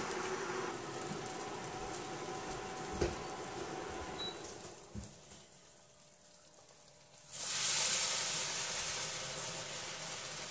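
A hot frying pan hissing steadily, with a couple of knocks from a utensil against the cookware, then, after a brief hush, a sudden loud sizzle as tomato sauce is poured into the hot pan, fading slowly as it settles.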